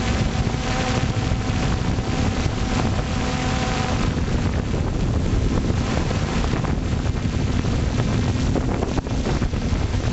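Wind buffeting the microphone of an FPV drone's onboard camera, over the steady hum of the drone's electric motors, with a faint tone that fades out about four seconds in.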